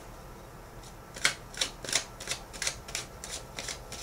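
Tarot cards being shuffled by hand: a run of short, sharp clicks, about three or four a second, starting about a second in.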